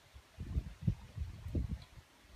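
A few faint, low knocks and bumps from a glass jar and its screw-on lid being twisted and handled.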